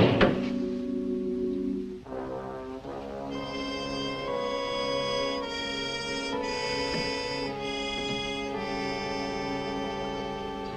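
Background score with brass holding long chords that shift every second or so, opening with a sharp loud hit.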